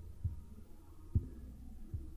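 A low steady hum with three soft, dull thumps spread about a second apart.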